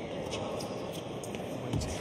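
Tennis ball struck by rackets during a rally on an indoor hard court: a few sharp knocks over steady arena noise, the strongest near the end.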